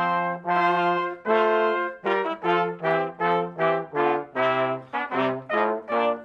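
Brass quintet playing processional music: a few longer held chords, then from about two seconds in a run of shorter, separated chords, about three a second.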